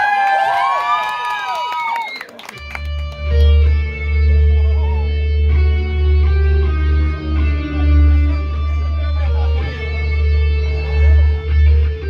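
Voices yelling for the first two seconds or so. Then, about two and a half seconds in, a live rock band starts its song with a heavy, steady low bass and sustained guitar notes held above it.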